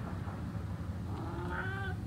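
Domestic tabby cat giving a soft, drawn-out meow that rises in pitch near the end.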